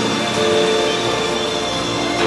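Karaoke backing track playing an instrumental passage of held, sustained chords.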